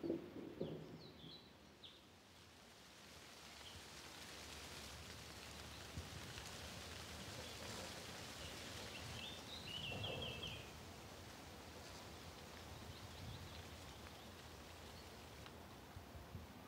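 Faint outdoor ambience: a steady hiss with a few bird chirps, including a short quick trill about ten seconds in, and a low rustle at the very start.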